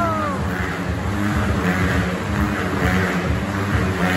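Motorcycles running inside a steel-mesh globe of death, their engines a dense, pulsing drone.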